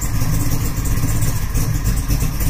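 A 572 cubic-inch big-block Chevrolet V8 in a 1967 Camaro RS idling steadily after a cold start.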